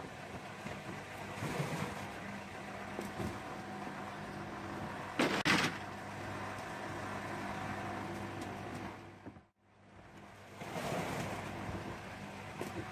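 A motor running steadily with an even low hum. A pair of short, loud knocks comes about five seconds in. The sound drops out briefly about two-thirds of the way through.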